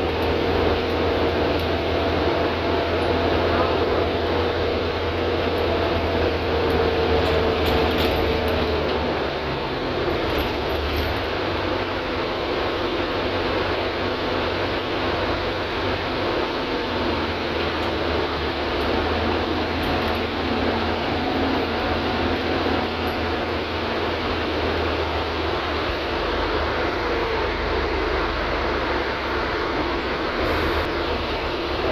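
City transit bus heard from inside the cabin while driving: steady engine drone and road noise. A whine runs over it for the first several seconds and fades about nine seconds in.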